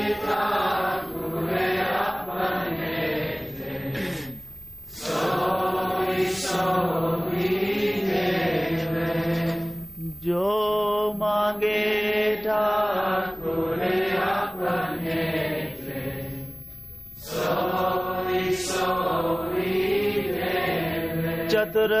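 Devotional hymn sung slowly in long, drawn-out phrases, with short pauses for breath about five, ten and seventeen seconds in.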